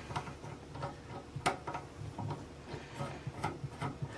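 Light, irregular clicks and ticks of metal plumbing fittings as the coupling nut of a braided flexible water supply line is hand-threaded onto a chrome bidet T-connector, with one sharper click about a second and a half in.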